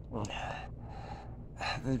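A man's audible breath, a soft gasp-like intake between phrases, then he starts speaking again near the end.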